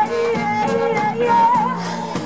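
Live band performing: a female lead vocalist sings held, wavering notes into a microphone over electric guitar and a drum kit with regular cymbal and drum strikes.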